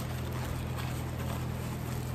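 Aluminium foil wrapper crinkling as a burger is unwrapped by hand, over a steady low hum.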